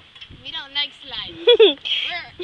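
Girls' voices in short high-pitched laughs and exclamations, with no clear words.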